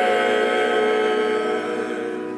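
Choir and string ensemble (cello and violins, with flute) holding a sustained chord that slowly softens.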